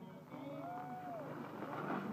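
A faint, drawn-out call from a distant voice about halfway through, over steady low outdoor noise.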